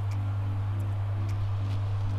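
Aquarium sump's return pump running, a steady low electrical hum.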